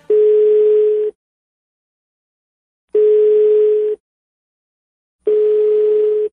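Telephone ringback tone heard over the phone line: a steady single-pitched beep about a second long, three times, roughly every two and a half seconds, as an outgoing call rings before it is answered.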